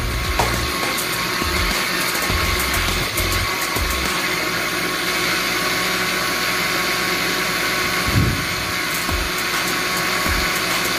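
Countertop electric blender running steadily, its motor whirring as it blends fruit juice in a glass jar.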